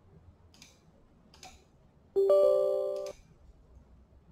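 Two faint mouse clicks, then about two seconds in a short Windows system chime of a few steady tones, about a second long, cut off with another click as the installer moves on.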